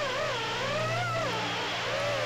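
Brushless motors and propellers of a BetaFPV HX115 3-inch quadcopter in flight: a whine whose pitch rises and falls with the throttle, dipping low a little past the middle before climbing again.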